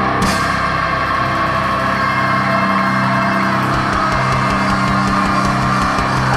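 Stoner rock band playing live with heavily distorted electric guitars, bass and drums. A cymbal crash comes just after the start, then guitars and bass hold long, ringing notes.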